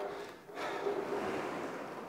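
Aviron rowing machine's flywheel spinning with a steady rushing noise that dips briefly about half a second in and then builds again as a stroke is driven, at an easy 20 strokes per minute.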